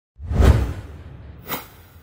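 Two whoosh sound effects in a logo-reveal animation. The first is loud, with a deep low boom under it about half a second in. The second is shorter and fainter, near the end, and fades away as the logo appears.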